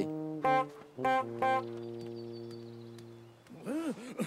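A small hand-held horn honks twice in quick succession, then a cartoon music chord rings on and fades over the next two seconds. Near the end comes a short call that rises and falls in pitch.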